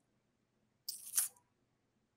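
A short, sharp breath close to the microphone about a second in, a brief breathy rush that stops abruptly, with near silence around it.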